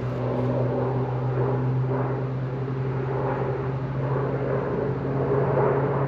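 Engine drone of an agricultural airplane flying on fertilizer over hay fields: a steady hum held at one pitch.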